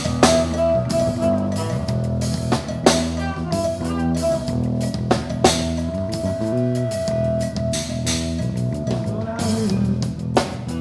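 Live blues-rock band playing instrumentally: electric bass line, electric guitar and drum kit with a few accented cymbal crashes, under a long held high lead note.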